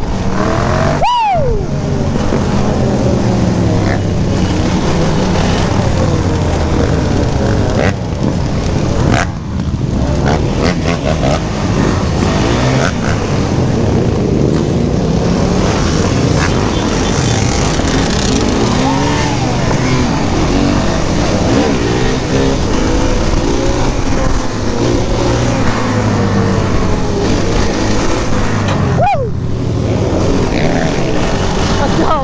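Sport quad's engine running hard at speed, revving up and down, amid other dirt bikes and quads revving in a group ride. An engine's pitch drops sharply about a second in and again near the end.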